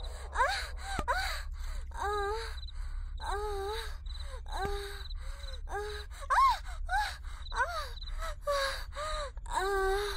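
A person's voice making short, pitched moaning sounds, each rising and then falling, repeated about once a second without words.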